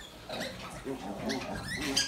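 Newborn piglets squeaking as they jostle and suckle at the sow: a few short, high squeaks, several rising quickly in pitch near the end.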